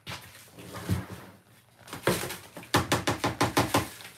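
A few single knocks, then a quick run of about ten light knocks in the last second and a half.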